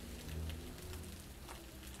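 Egg-battered pieces of dried salted fish frying in hot oil in a pan: a steady sizzle with many small crackles and spits.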